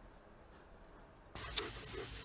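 Near silence for over a second, then a sudden switch to steady outdoor background hiss, with one sharp click soon after.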